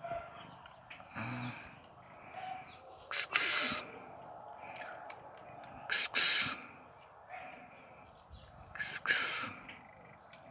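Birds chirping faintly in the background, broken three times, about three seconds apart, by a short loud hiss.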